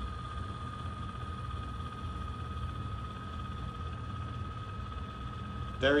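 YoLink EVO smart water valve's electric actuator motor turning the ball valve to open: a steady whine over a low hum.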